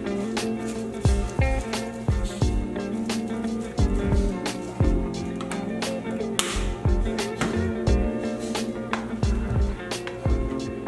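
Background music with a steady beat: sustained chords over a kick drum and crisp snare or hi-hat hits.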